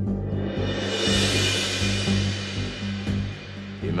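Dramatic background score: a sustained low drone with a high shimmering wash that swells up and fades away across the middle.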